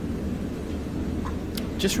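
Faint, muffled voices over a steady low hum, carried on a courtroom audio feed. A short breath-like hiss comes near the end.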